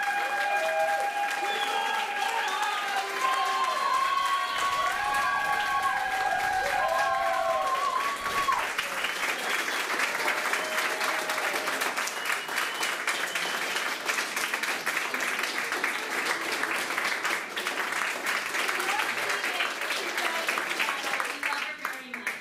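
Audience applauding in a small room. For the first eight seconds or so, several voices call out in long, overlapping cheers over the clapping, and after that there is only steady clapping.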